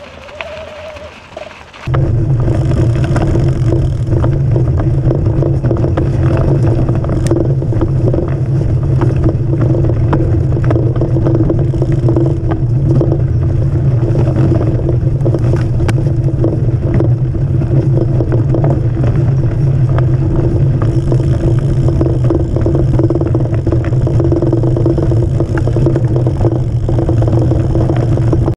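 Mountain bike ride heard from a camera on the front fork: from about two seconds in, a loud, steady rumble of tyre and wind noise with a constant hum, and scattered rattling clicks from the bike over the frozen ground.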